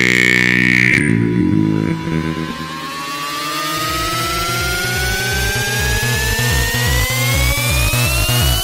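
Electro house track: a held synth chord cuts off about a second in, then a synth sweep rises steadily in pitch, and a regular kick-drum beat comes in underneath about four seconds in.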